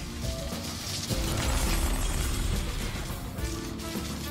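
Online slot game's background music and sound effects as symbols clear from the reels, with a low swell about a second in.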